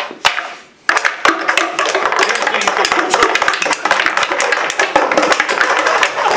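Sticks striking a small puck back and forth inside a homemade table-hockey box: a rapid clatter of taps and knocks, starting after a sharp knock about a second in, with voices talking in the background.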